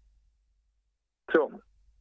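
Speech only: over a second of near silence, then a man says one short word.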